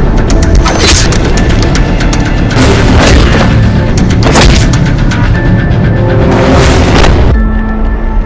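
Film fight sound effects: a quick flurry of sharp hits in the first second, then heavier booming impacts, over a music score. The din cuts off suddenly about seven seconds in.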